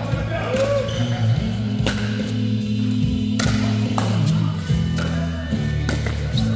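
A few sharp pops of a pickleball rally, the plastic ball struck by paddles, over background music with a steady bass line.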